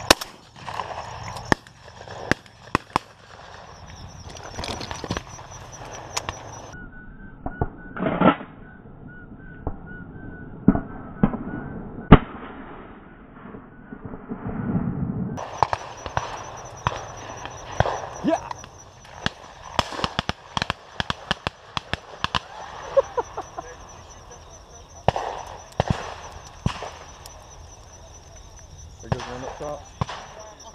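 Shotgun shots on a dove field, sharp single reports at irregular intervals, some close and loud, others fainter and more distant. The loudest comes about twelve seconds in.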